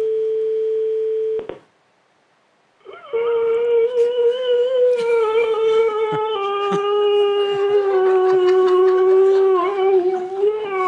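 A phone call recording played over speakers. First comes a French ringback tone: one steady beep of about a second and a half. After a short silence, the answering-machine greeting begins as a long, drawn-out howl-like cry held near one pitch and sagging slightly near the end, meant to frighten the caller.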